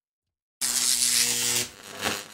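Logo sting sound effect: a loud electric buzz with a low hum running through it. It starts suddenly, lasts about a second, drops away, then gives a short second burst near the end.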